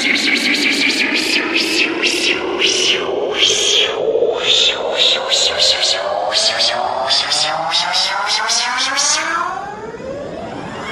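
Electronic dance music from a DJ set with no kick drum: sharp noisy percussion hits about four a second over synthesizer tones that sweep upward in pitch, dipping in level near the end.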